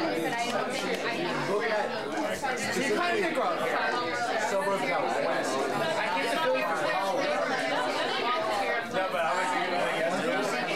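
Many people talking over one another in a crowded room: steady party chatter, with no single voice standing out.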